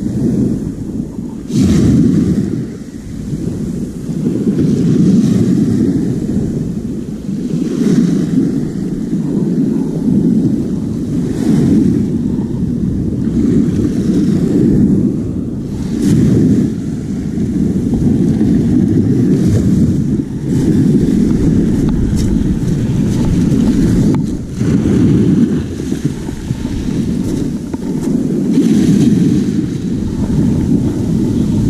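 Sea surf breaking and washing up a pebble shore, with wind rumbling on the microphone; the noise swells and eases every few seconds.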